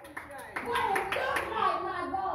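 Rhythmic hand clapping, about two or three claps a second, under a woman's voice speaking into a microphone.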